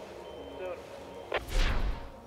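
A sharp click and then a loud, deep boom with a falling whoosh about a second and a half in: the impact-and-whoosh sound effect of an animated logo sting. Before it, faint talk.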